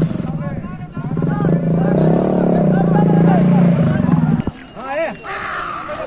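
A motorcycle engine runs steadily and loudly, then cuts off abruptly about four and a half seconds in. Voices shout over it and after it.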